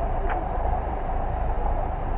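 A vehicle engine idling: a steady low rumble under street noise, with a brief click about a third of a second in.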